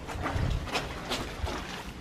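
Wet, soapy clothes being scrubbed by hand on a concrete washboard sink: a run of irregular rubbing and sloshing strokes, with a soft thump about half a second in.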